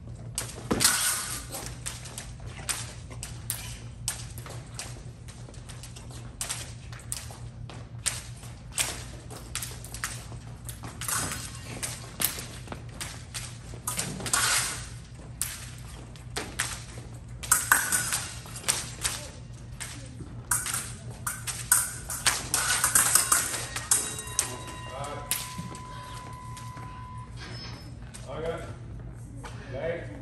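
Épée bout: quick footwork on the piste and blades clicking and clattering in short bursts. Near the end an electronic scoring-machine tone sounds steadily for about three seconds, signalling a touch.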